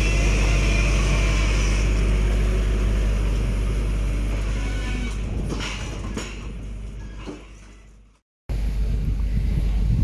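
A JCB telehandler's diesel engine running steadily as the machine moves, fading out about eight seconds in. After a short break, a steady low rumble of wind on the microphone.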